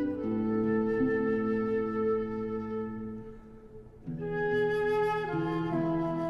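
Slow instrumental music of long held woodwind-like notes. It thins out briefly a little past halfway, then a new phrase of held notes enters.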